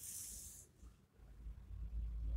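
A short, high-pitched hiss lasting under a second, then a low rumble of handling noise on the phone's microphone as the camera is moved.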